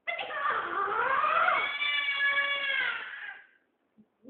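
A baby's single long, high-pitched cry that dips in pitch near the start, rises and holds steady, then fades out after about three and a half seconds.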